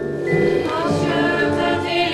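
A choir singing long, held notes as music.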